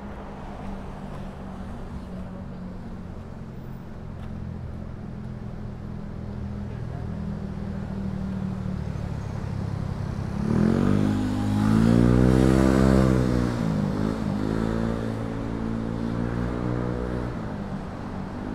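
City street traffic: a motor vehicle's engine idling steadily, then revving and pulling away about ten seconds in, its pitch rising, dipping and rising again, loudest a couple of seconds later before easing off.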